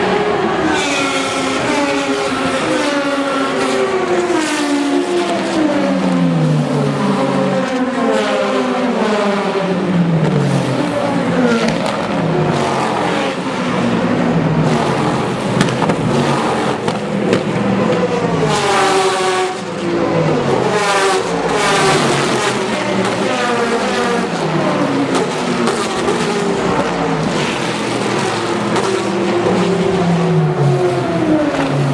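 A stream of endurance race cars going past one after another at speed, their engine notes overlapping. Each note falls in pitch as that car goes by.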